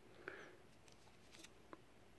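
Near silence: room tone, with a faint brief rustle just after the start and a couple of tiny clicks, the sound of a plastic coin sleeve being handled.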